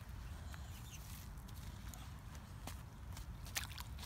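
Quiet outdoor scene: a steady low rumble with a few faint, short clicks and scuffs of stones on a pebbly lakeshore as a child picks up rocks and shifts his feet.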